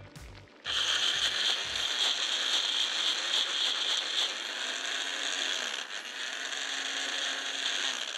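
Small electric mixer grinder running steadily as it grinds soaked chana dal to a coarse paste. It starts about a second in and cuts off near the end.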